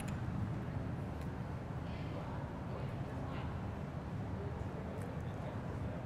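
Steady low room hum of a busy public hall, with faint, indistinct voices in the background.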